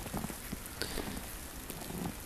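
Soft, scattered crunches of dogs' paws moving in snow over a steady hiss.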